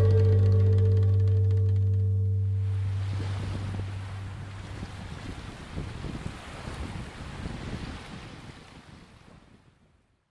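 The last held chord of a folk song dies away over the first three seconds. Then sea surf washing on a rocky shore rises in uneven surges and fades out near the end.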